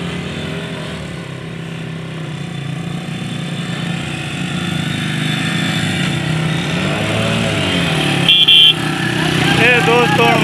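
Motorcycle loader rickshaw's small engine running steadily, growing louder as it comes closer. A brief high beep sounds about eight seconds in, with voices shouting near the end.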